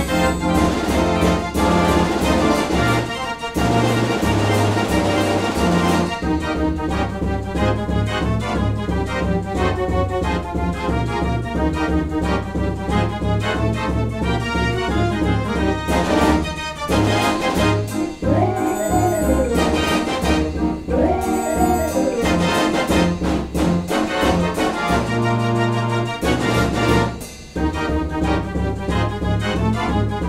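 84-key Mortier orchestrion, a Belgian pipe dance organ, playing a dance tune with a steady bass and beat.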